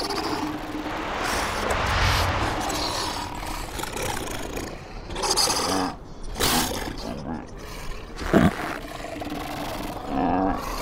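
Cartoon soundtrack: a rushing noise for the first few seconds, then a cartoon seal character's short wordless vocal grunts and cries, one of them a sharp falling cry about eight seconds in.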